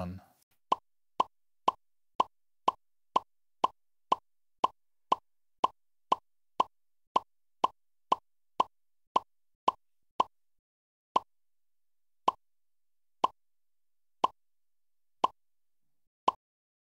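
Game-show sound effect: a run of short electronic blips, each one marking a letter being taken from the alphabet board and revealed in the answer. About two a second at first, slowing to about one a second from about ten seconds in.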